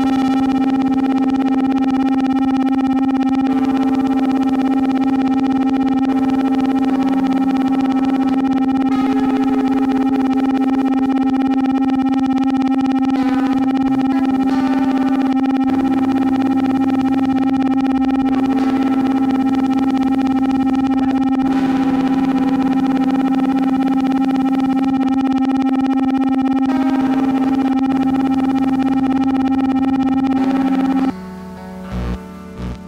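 Electric guitar played through an ARP 2600 clone synthesizer: one steady held drone note runs unbroken, while lower and middle notes change every few seconds.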